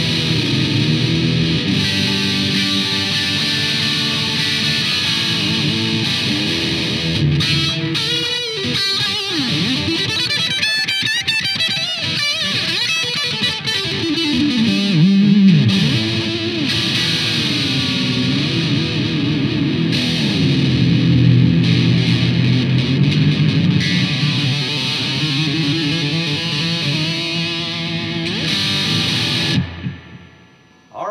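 Distorted electric guitar played through an amp: an Epiphone Les Paul Studio fitted with a Les Trem-style tremolo. Several times the whammy bar pulls the pitch down and lets it back up, with wobbling vibrato in places. The playing stops just before the end.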